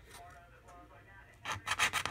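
A copper coin scratching the coating off a scratch-off lottery ticket: a brief lull, then a run of quick scraping strokes starting about one and a half seconds in.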